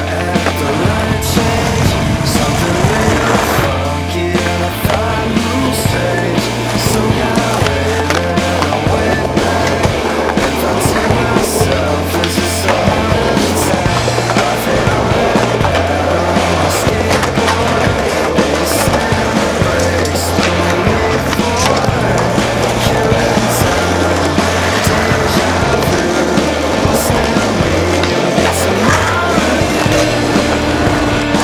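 Skateboards rolling on concrete, with sharp clacks of tricks and landings, under loud music with a bass line that moves in blocks of a few seconds.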